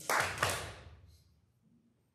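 A short burst of rustling with a sharp knock about half a second in, close to the lectern microphone, fading out within about a second.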